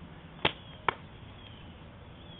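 Two sharp slaps about half a second apart: a ball smacking into a player's hands as he catches it.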